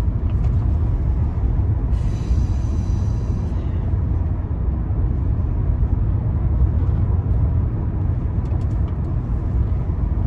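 Steady road and engine rumble of a moving car, heard from inside the cabin. About two seconds in, a faint high whine sounds for about a second and a half.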